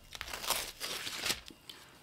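Crinkling and rustling of packaging being handled: a run of irregular crackles that stops about one and a half seconds in.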